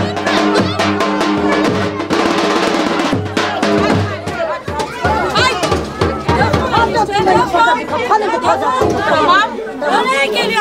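Music with drums for about the first four seconds. Then it stops, and several people talk and call out over each other.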